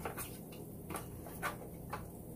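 Fresh cilantro being handled and pressed into a glass bowl of ramen from a foam takeout container: a few soft, light ticks and rustles.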